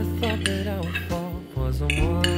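Metal spoon and fork clinking and scraping against a dish as glass noodles and shrimp are lifted, over a background song with a sung melody.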